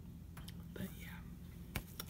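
A soft, airy whisper or breath from a woman's voice about halfway through, over a steady low hum. Near the end comes a sharp tap as fingers come down on a paperback book's cover.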